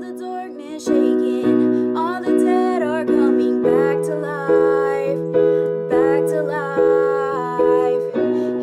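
A young woman singing a slow worship song solo over keyboard accompaniment, the chords restruck in an even pulse of about one every 0.7 seconds.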